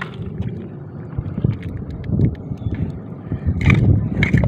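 Wind rumbling on the microphone over sloshing and squelching of shallow water and wet mud as a hand tool digs for shellfish, with a few sharper splashes and scrapes in the last half second.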